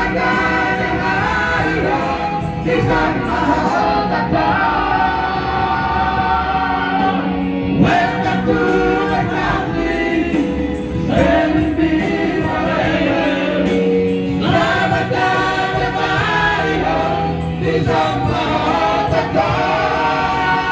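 Several men singing a song together through microphones, amplified over backing music, their voices blending like a small choir.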